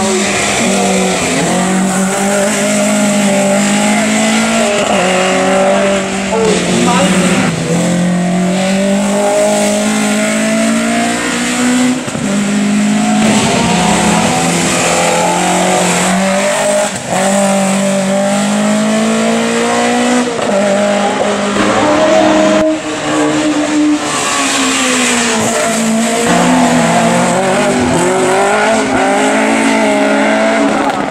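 Race-tuned engine of a Volkswagen Golf Mk1 hillclimb car revving hard, its pitch climbing and then dropping again and again as it shifts up through the gears and lifts for corners.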